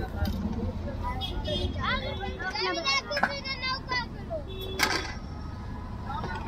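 Street-stall bustle: people talking over a steady low rumble of traffic, with two sharp clatters, about three seconds in and near five seconds.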